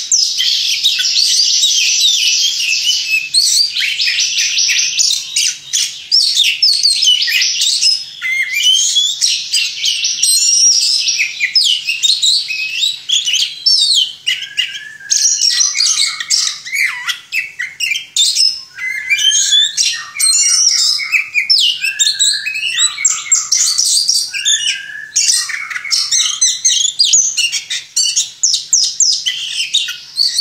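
Caged oriental magpie-robin singing without a break: a dense, rapid stream of high chirps and trills. Past the halfway point the song turns to more varied phrases with lower whistled notes and short pauses.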